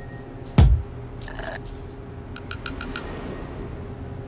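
A metal trash can lid banged down once on the can about half a second in, then two short bursts of jangling keys, laid over a steady low drone as a rhythm built from everyday objects.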